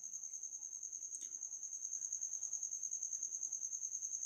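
A cricket chirping in the background: a steady, high trill, evenly pulsed about ten times a second. A faint click about a second in.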